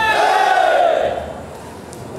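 A crowd of fans shouting together in one loud collective yell that swells in the first second and then fades away.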